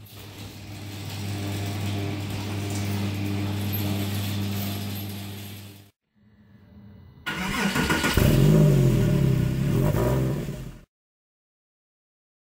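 Porsche flat-six engine running at a steady idle that cuts off suddenly about six seconds in. After a short quieter stretch it is revved up and down several times, which is the loudest part, and then the sound stops abruptly.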